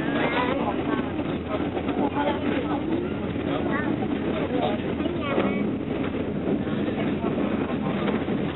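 Steady running noise of a passenger train heard from inside the coach through an open window, with indistinct passenger voices chatting over it.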